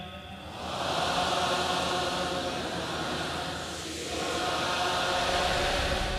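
A large crowd chanting a mantra in unison, heard as one broad, blurred mass of voices with no single voice standing out. It dips briefly about four seconds in, as at a breath between chants.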